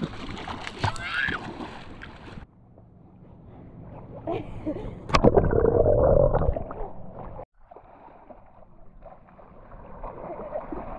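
Water splashing in shallow water for the first couple of seconds, with a brief child's voice. Then, after a sudden cut, muffled rumbling and knocking from the camera being handled with its lens covered, loudest from about five to seven seconds in with a sharp click at its start, before another cut to quieter splashing.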